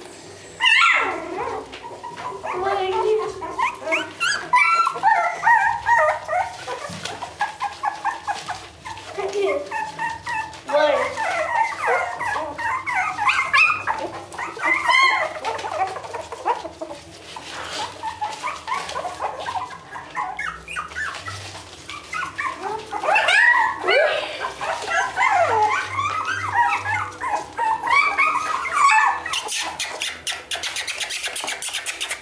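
A litter of three-week-old beagle puppies whining and yelping, many short high calls overlapping one another.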